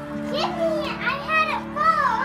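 Children's high-pitched voices calling out, starting about half a second in and loudest near the end, over background music with steady held notes.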